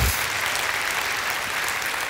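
Audience applauding, a steady wash of clapping.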